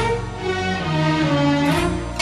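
Instrumental opening of an Arabic song: a string section playing held notes over a low bass line, with no singing yet.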